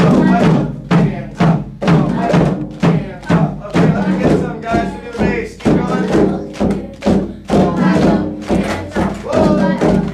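Group hand drumming on congas, hand drums and a drum kit, playing a steady beat of about two strokes a second, with voices over it.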